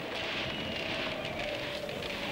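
Steady background hiss of film ambience with a faint high held tone beneath it, and no distinct events.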